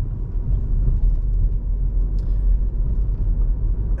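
Steady low rumble of a Volkswagen Golf petrol car driving slowly, heard from inside the cabin: engine and tyre noise from the road.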